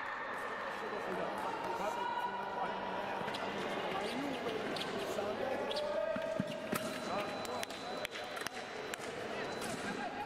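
Sabre fencers' footwork thudding on the piste during an exchange, with sharp clicks clustering late on as the action closes.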